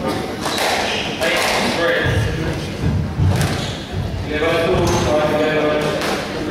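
Squash rally on a wooden-floored glass court: several sharp smacks of the ball off racket and walls, with low thuds from the players' feet on the floor, in a large echoing hall.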